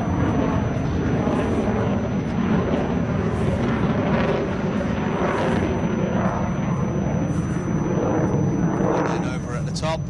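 Steady loud roar of a JF-17 Thunder fighter's jet engine at high power as the jet climbs, with indistinct voices over it.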